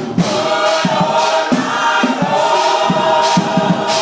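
Gospel choir singing long held chords that swell and sustain.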